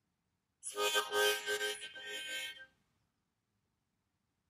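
Harmonica played as a stand-in for a spoken sentence. It gives a phrase of several short, broken-up chords with the rhythm of speech, lasting about two seconds and starting just over half a second in. The phrase stands for the words 'So the question is really'.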